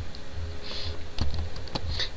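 Computer keyboard being typed on: a handful of separate keystrokes, entering the word "class" into code.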